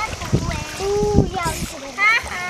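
Water splashing in a swimming pool, with children's voices over it.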